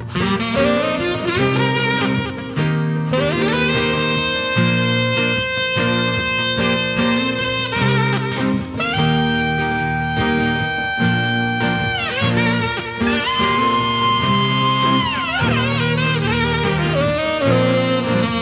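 Saxophone solo over a live rock band with drums, bass and guitar. The saxophone plays runs and long held notes, two of which, about halfway through and a few seconds later, are held and then fall away in pitch.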